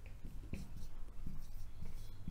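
Marker writing on a whiteboard: a series of short, faint scratching strokes as letters are drawn.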